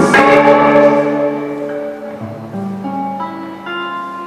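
Amplified electric guitar: a chord struck hard right at the start rings out and slowly fades, then single notes are picked one after another, each left ringing over the others.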